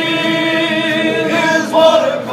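Unaccompanied male voices singing a slow gospel hymn, holding long notes that move to a new, higher note shortly before the end.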